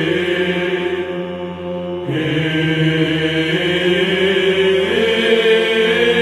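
Byzantine choir chanting a melismatic kalophonic heirmos in the third mode, long sung vowels held over a steady low drone (the ison). The singing thins out about a second in, and a fuller phrase enters about two seconds in.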